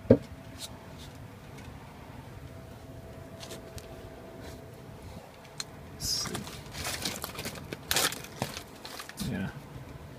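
Handling noise: a sharp click right at the start, then a run of scrapes, rustles and crinkles from about six to nine and a half seconds in, as the camera is moved about against wood and pipes.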